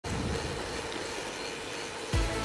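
Steady rush of wind and tyre noise from a bicycle rolling along a tarmac lane.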